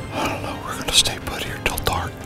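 A man whispering a few words.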